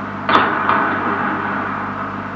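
Film soundtrack with a steady background of hiss and low hum, broken by two short, sharp knock-like hits about a third and two-thirds of a second in.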